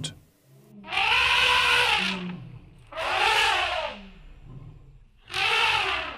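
Elephants trumpeting: three long calls, each about a second long, rising and then falling in pitch.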